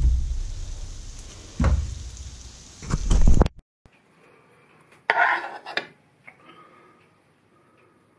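Metal tongs knocking and scraping in a wok of sizzling butter with scallops, a few knocks in the first three seconds. The sound cuts off suddenly about three and a half seconds in, and about five seconds in a metal spoon scrapes briefly on a plate.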